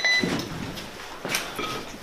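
Soldiers' boots and gear shuffling and knocking as a squad moves through a doorway, with a few irregular knocks and scuffs and one sharper knock a little past halfway.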